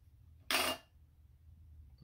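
A metal jar lid set down on a table with one brief clink about half a second in.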